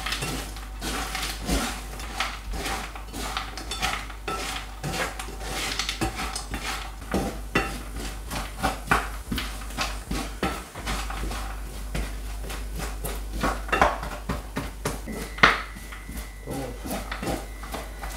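Wooden spatula scraping and knocking around a stainless steel frying pan as almonds are stirred in caramel, with irregular clattering strokes throughout. This is the continuous stirring as the sugar coating melts back into a glassy caramel.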